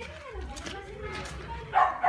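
A dog barking sharply near the end, with faint voices before it.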